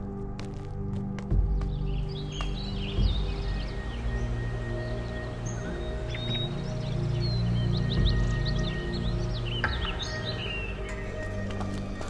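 Film score with sustained low tones and two deep hits near the start. Bird calls chirp over it from about two seconds in until near the end.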